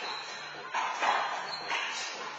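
Handball rally sounds: the ball slapping the front wall and floor and sneakers squeaking on the court, several sharp sounds under a second apart that echo in the hall, over a steady low hum.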